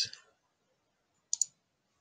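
Two quick computer mouse clicks in close succession, about a second and a half in.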